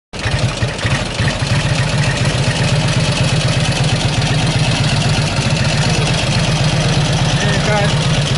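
Vintage Indian motorcycle engine idling steadily with a rapid, slightly uneven low beat, cutting in abruptly at the start and holding a constant speed with no revving.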